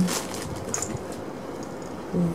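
Faint handling noise as a stuffed fabric cushion is lifted off a pile of fabric scraps, with a few light ticks.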